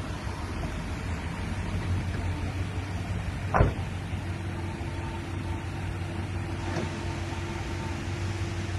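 A 2005 GMC Sierra pickup's 4.8-litre V8 idling with a steady low hum, and the driver's door shutting with a single thump about three and a half seconds in.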